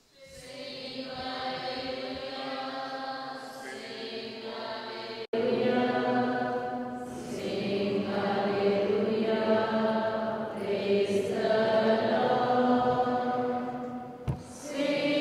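Church choir singing the Gospel acclamation in slow, held notes. About five seconds in, the sound breaks off for an instant and comes back louder.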